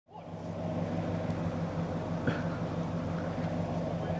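Vehicle engine idling steadily, fading in at the start.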